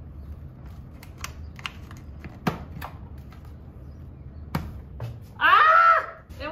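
Scattered light plastic clicks and taps as a slim LED wafer light is pressed up into its hole in a wood plank ceiling, over a low steady hum. Near the end a person gives a short, loud exclamation, the loudest sound here.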